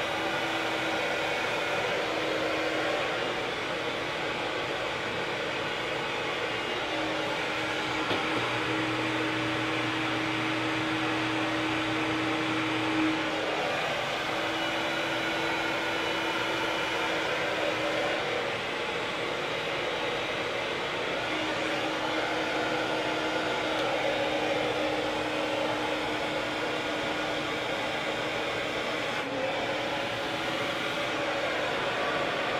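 Handheld hair dryer running steadily, blowing on long hair wound around a round brush: a continuous rush of air with a faint steady motor tone.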